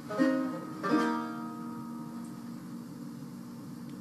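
Banjo picked by hand: two chords struck, one just after the start and another just before a second in, each ringing out and slowly fading.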